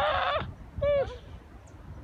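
A child's high-pitched squeal for about half a second, then a short falling yelp about a second in, while wading and grabbing at a blue crab in shallow water.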